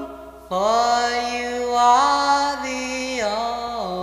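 Unaccompanied doo-wop vocal group singing held harmony chords that come in after a short gap and shift pitch together every half second or so, sliding down near the end.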